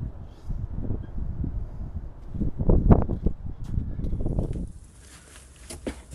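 Muffled rustling and uneven bumps of movement on a clip-on microphone, loudest about three seconds in. About a second before the end it drops to a quieter, steady hiss.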